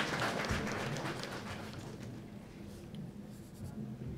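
Faint rustling and shuffling in a large hall, with small crackles, dying away over the first couple of seconds.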